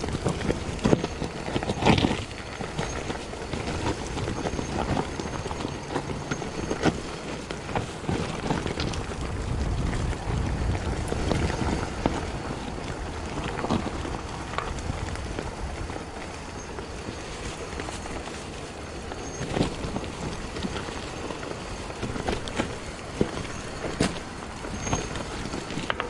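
Mountain bike descending a dirt forest singletrack: tyres rolling over dirt and dry leaves, with frequent knocks and rattles from the bike over bumps, and wind rumbling on the microphone.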